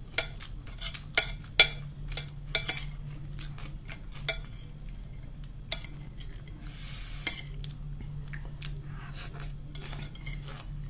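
Metal spoon clinking and scraping against a ceramic plate while scooping dumplings and meatballs in soup. A run of sharp clinks comes in the first three seconds, with scattered ones after.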